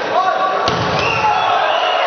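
Futsal ball struck with two sharp knocks about a third of a second apart, a hard shot on goal, over raised voices in the hall.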